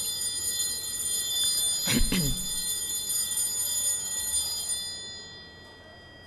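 A high-pitched electronic ringing, many thin high tones sounding together, that holds steady and then fades out about five seconds in. A brief voice-like sound comes about two seconds in.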